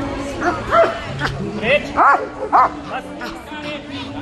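Police German shepherd barking several times in quick succession in the first three seconds, over crowd chatter.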